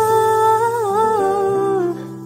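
A singer holds one long vocal note, wavering a little in pitch, over a soft, steady acoustic accompaniment. The note ends near the end.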